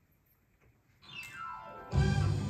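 After a second of near silence, the song intro starts with a fast descending piano glissando, sweeping from high to low. It leads into the full band coming in with bass and drums at the end.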